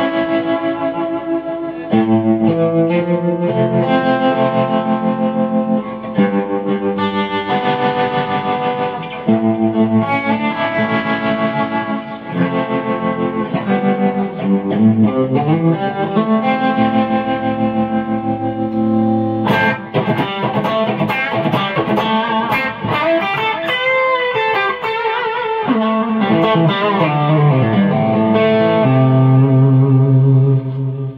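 Electric guitar played through a TC Electronic G-System multi-effects floorboard on a tremolo preset: a run of chords and single-note phrases, with sharper strummed chords starting about two-thirds of the way through.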